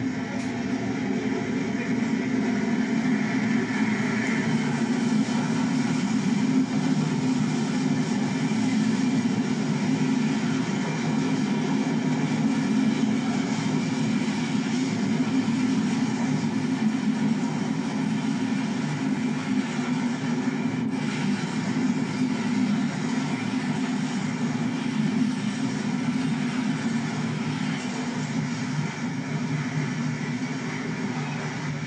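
Diesel locomotive hauling a freight train past at close range: a steady engine drone with the rumble of the wagons rolling over the rails.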